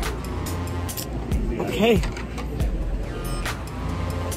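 Busy restaurant room noise: background music and other people's voices over a steady low rumble, with scattered short clicks and knocks. A single short spoken word about two seconds in.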